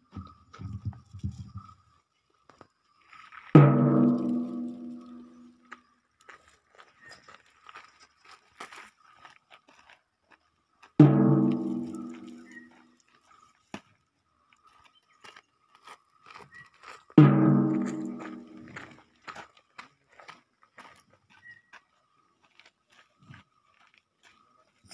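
Three single struck, ringing musical notes several seconds apart, each dying away over about two seconds, over a faint steady high whine.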